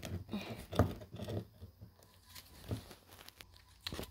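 Fingers digging pink cloud slime out of its jar: soft, irregular sticky tearing and crackling, with the sharpest snap about a second in.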